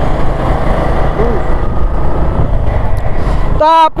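Motorcycle being ridden at road speed: a steady, loud rumble of wind on the microphone over the engine's running. A voice starts near the end.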